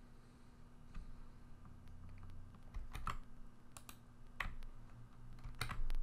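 Computer keyboard keys pressed a few at a time, a handful of separate sharp clicks spread over several seconds, while editing code rather than typing steadily.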